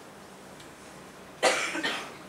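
A single loud cough about one and a half seconds in, a sharp burst with a shorter second burst just after it.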